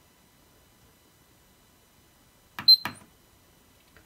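Miele W1 washing machine control panel: a button pressed about two and a half seconds in, giving a sharp click with a short high beep, then a second click a moment later.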